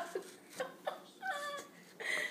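A baby making a few short, quiet, high-pitched vocal sounds, the last one falling in pitch.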